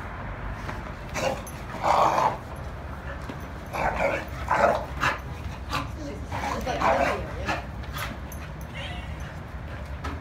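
Two dogs play-fighting, giving short barks and yips in bursts, the loudest about two, four to five, and seven seconds in.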